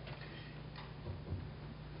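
Quiet pause picked up by a lectern microphone: a steady low electrical hum with a couple of faint, soft knocks.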